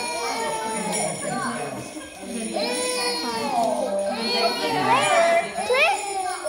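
Voices singing over a toddler's crying, with a few sharp rising wails near the end.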